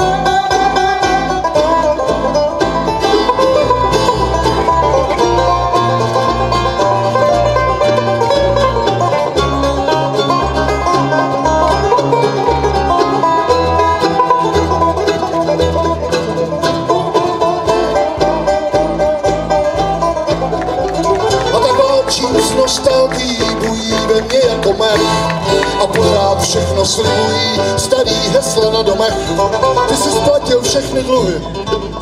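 Bluegrass band playing live without singing: banjo, acoustic guitar and upright bass.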